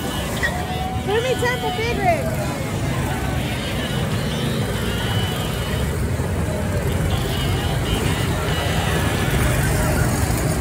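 Street noise with a steady low rumble and voices; about a second in, someone calls out in a short whoop that rises and falls.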